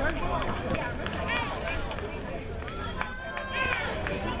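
Several spectators' voices talking and calling out over one another, with no one voice clear, and a briefly held higher call about three seconds in.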